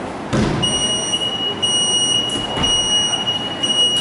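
Gym countdown timer's electronic buzzer sounding a high-pitched beep that pulses about once a second through the final seconds of the countdown to the start of a workout. A thump lands just before the beeping begins.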